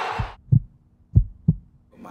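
Heartbeat sound effect: deep low double thumps, lub-dub, repeating about once a second. It comes in right after loud game crowd noise cuts off suddenly at the start.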